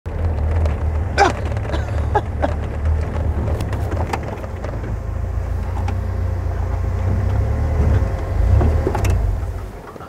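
Safari vehicle driving over rough bush track: a steady low engine and road rumble with scattered knocks and rattles, dying down near the end.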